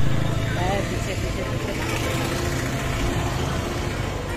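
Roadside traffic noise with a vehicle engine running close by, a steady low hum that fades out about three and a half seconds in, and brief snatches of voices.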